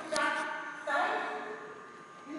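A high-pitched voice making two drawn-out calls without clear words: a short one at the start, and a longer one about a second in that rises in pitch.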